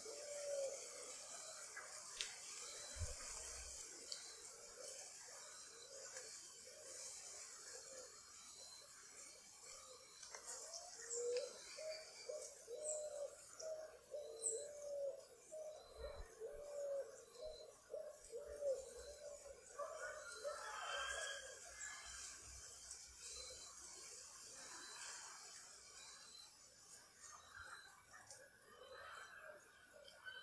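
Faint bird calls: a low warbling call repeated about twice a second for several seconds in the middle, with a few short high chirps.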